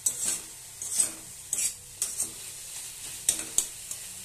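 A spatula scrapes and stirs a bottle-gourd peel and chickpea stir-fry around a metal wok, over the steady sizzle of frying. The scrapes come irregularly, about seven in four seconds.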